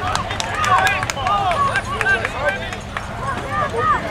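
Many overlapping voices calling and chattering at once from players, coaches and sideline spectators at a youth football game, mostly high children's and adults' shouts with no one voice clear, mixed with scattered sharp clicks.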